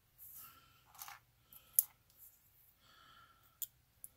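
Faint handling noises of small resin model parts turned in the fingers: soft rustles and two sharp clicks, about two seconds apart.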